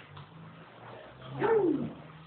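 A person's short vocal call about one and a half seconds in, its pitch rising and then falling, over a faint steady low hum.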